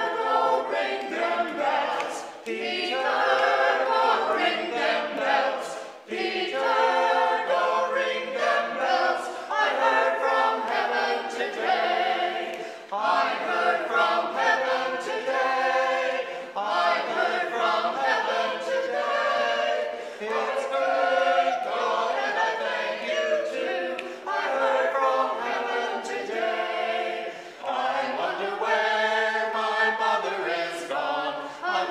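Small mixed choir of men and women singing together, unaccompanied, in long phrases with short breaks for breath.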